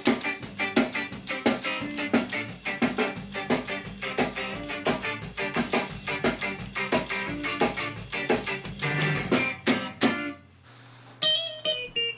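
Electric guitar played ska-style: short, muted chord strums repeated in a steady, quick rhythm, each stroke choked off by lifting the fretting fingers. The strumming stops about ten seconds in, and a few single notes follow near the end.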